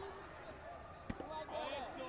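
One sharp thud about a second in, a taekwondo kick landing on an electronic body protector, over background voices and chatter in the hall.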